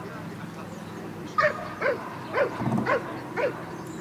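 A dog barking five times in quick succession, about half a second apart, starting about a second and a half in.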